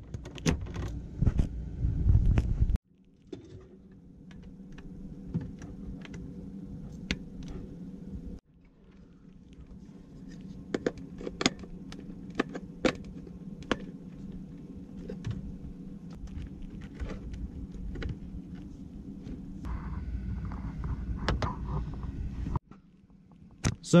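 Plastic clicks, knocks and rattles from handling a small portable TV, its power plug and lead, and its clip-on stand, over a steady low hum.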